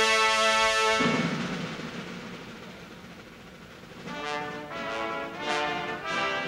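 Ceremonial brass band playing: a held chord ends about a second in and rings away, then brass chords start again about four seconds in with short, separate notes.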